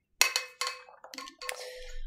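Several sharp clinks of a hard object knocking against a small vessel, which rings briefly after some of the knocks.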